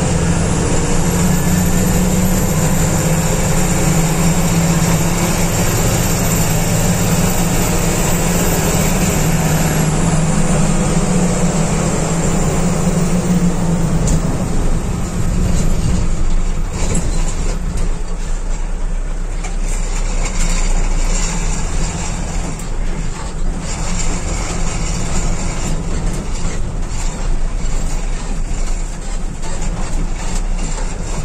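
Diesel engine and road noise of a sleeper coach heard from the driver's cabin: the engine runs steadily under load, then its note drops about halfway through. Scattered clicks and rattles of the cabin fittings come in the second half.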